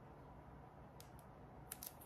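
Near silence, with a few faint, short ticks from a liquid glue bottle's tip being dabbed onto a small paper die-cut, about a second in and again near the end.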